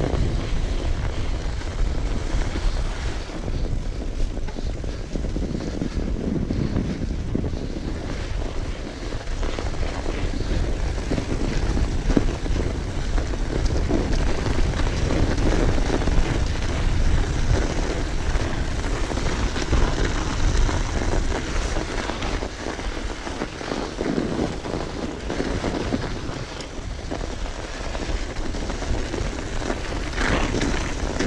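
Steady wind rush on a chest-mounted action camera's microphone as a mountain bike rolls fast over a snow-covered track, with the tyres' noise on the snow underneath.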